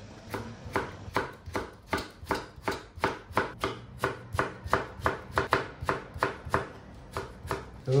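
Long single-edged sushi knife julienning stacked cucumber sheets on a plastic cutting board: a steady run of quick knife strikes on the board, about three a second, stopping shortly before the end.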